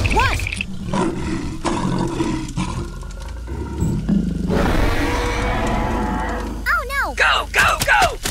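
A long dinosaur roar sound effect in the middle, followed near the end by several short, high cries in quick succession.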